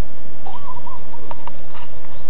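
A bird calls a short warbling phrase about half a second in, followed by a few brief sharp notes, over steady background noise.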